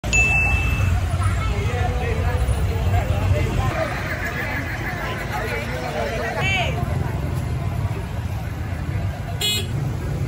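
Street crowd ambience: many people's voices chattering over a steady low rumble of traffic, with a short horn toot near the end. A brief steady tone sounds in the first second.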